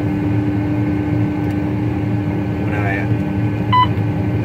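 Steady drone of a John Deere CH570 sugarcane harvester running, heard inside its cab. A short electronic beep comes from the cab controls near the end.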